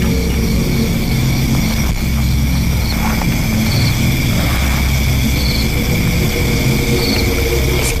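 Low, steady droning music bed of held tones over a deep hum.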